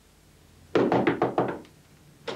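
Quick knocking on a wooden door: about seven fast raps in under a second, starting a little before the middle.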